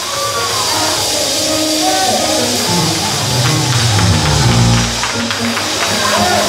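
Live church band music: sustained organ or keyboard notes over a bass line with light percussion, playing without a break.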